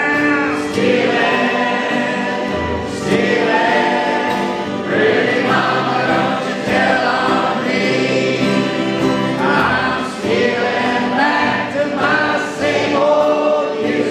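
Crowd singing along in chorus with a live acoustic folk band, with acoustic guitar and fiddle, in sung phrases of a few seconds each.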